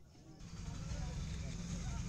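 A low, steady rumble with faint, indistinct voices behind it, setting in about half a second in after a brief silence.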